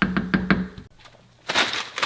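A metal spoon knocks about three times on the rim of an enamelled cast-iron pot in the first half-second. Near the end a plastic bag of frozen shrimp crinkles.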